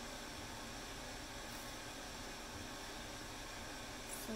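Steady, faint hiss of background noise with no distinct event in it.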